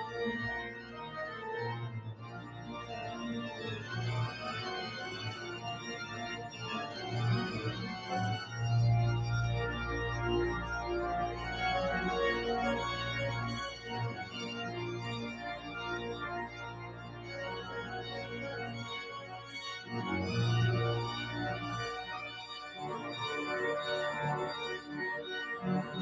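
Visser-Rowland pipe organ playing sustained chords on the manuals over a pedal bass line, with deeper pedal notes coming in about eight seconds in and sounding for most of the rest.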